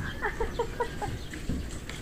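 Chicken clucking: a quick run of short calls in the first second, followed by a couple of light knocks.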